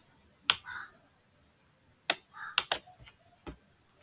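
Several short, sharp clicks at irregular intervals, two of them close together a little over halfway through.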